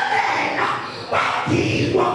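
A man's voice shouting loud, short exclamations through a handheld microphone and PA: two bursts, one at the start and another just over a second in.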